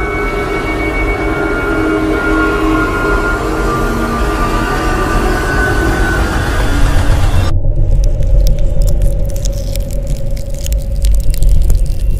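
Dramatic background music laid over the footage: sustained droning tones above a deep rumble. About seven and a half seconds in it changes abruptly to a heavier low rumble with a crackly, grainy texture on top.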